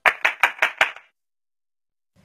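A rapid run of about seven sharp, clap-like hits, evenly spaced and growing fainter, dying away within the first second.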